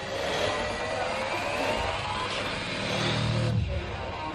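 Lat pulldown cable machine in use: the cable running over its pulleys gives a whirring whine that rises in pitch over the first couple of seconds, and the weight stack rumbles as it rises and falls.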